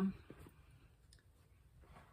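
A few faint clicks and light handling noises as small objects are moved about on a tabletop, just after a spoken word trails off at the start.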